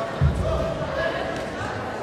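A single dull, low thump about a quarter second in, over voices and chatter echoing in a large sports hall.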